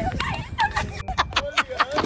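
Women laughing hard in a rapid run of short, choppy bursts that quicken near the end.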